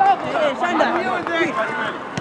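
Several voices shouting and calling over one another: football players and touchline voices during open play.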